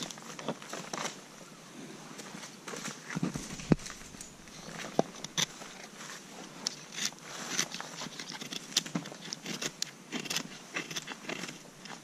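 Knife blade shaving thin curls down a wooden stick to make a feather stick: a series of short, irregular scraping strokes. A dull thump comes about three and a half seconds in.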